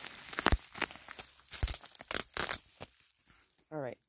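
Plastic bubble wrap crinkling and crackling as it is pulled open by hand, with a quick run of sharp crackles over the first two and a half seconds that then die away.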